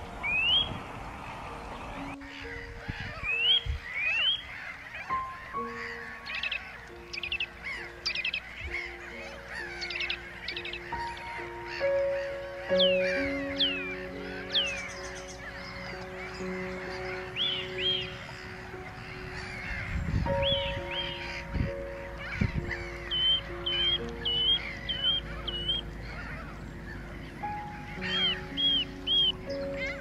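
Slow background music of long held notes over a colony of Mediterranean gulls calling: many short, nasal, arched calls, some in quick runs of four or five.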